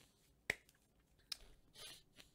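A sharp click about half a second in and a fainter one less than a second later, then a short breath near the end, close to the microphone.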